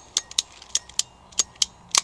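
Sharp metallic clicks from a hand tool being worked at the fuel line beside the carburetor, about three or four a second, unevenly spaced.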